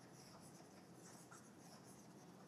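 Faint scratching of a stylus writing on a tablet screen.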